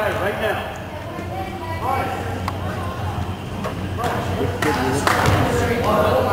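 Gymnasium ambience: indistinct voices and chatter echoing in the hall over a steady low hum, with a few faint knocks.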